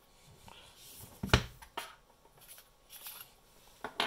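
Handling noise of a Wurkkos FC13 flashlight being unscrewed and taken apart on a desk: faint scraping and rustling, with one sharp click about a second in and a few lighter clicks after it.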